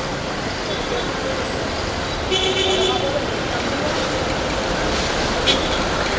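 Busy street traffic noise among queued auto-rickshaws, with a vehicle horn tooting once for under a second a little over two seconds in and a sharp click near the end.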